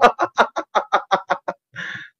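A man laughing hard: a fast run of about a dozen short "ha" pulses that fade over a second and a half, then a sharp breath in near the end.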